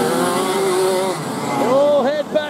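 Several 125cc two-stroke kart engines racing past together, their pitches sagging as they go by, then one climbing sharply near the end as a driver accelerates.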